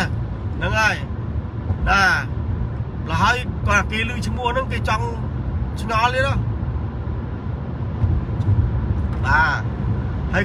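A man speaks in short phrases over the steady low rumble of a car's cabin.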